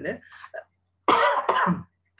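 A man coughing twice in quick succession, about a second in, after a trailing bit of speech.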